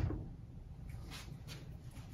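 A single knock at the start, then faint handling sounds as a corded soldering iron is picked up and readied.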